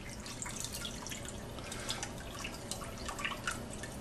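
Sumac-steeped water dripping and trickling from a colander of soaked staghorn sumac berries into a metal bowl of liquid below, a run of many small, irregular drips.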